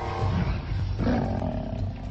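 Lion roaring while being attacked by Cape buffalo, with the strongest cry about a second in.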